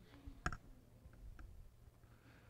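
Quiet room tone with a single sharp click about half a second in, followed by two or three faint ticks.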